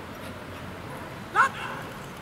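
A single short, loud vocal call rising quickly in pitch, about two-thirds of the way through, over a steady murmur of spectators.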